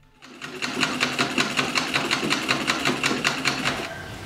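Sewing machine stitching at a fast, even rate, about five strokes a second, starting about half a second in and stopping just before the end.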